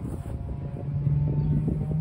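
Wind rumbling on the microphone, with a steady engine drone joining about a second in.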